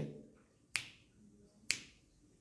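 Two sharp clicks about a second apart, each with a short echo tail, part of a steady beat of roughly one click a second.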